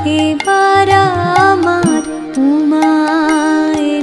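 Instrumental interlude of a traditional Bengali folk song: a shehnai plays a bending melody and then holds long notes, over sreekhol drum strokes and the clicks of mandira cymbals and a plucked dotara.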